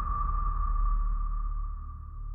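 Electronic logo sting: a single steady, ping-like high tone over a deep low rumble, struck just before and slowly fading away.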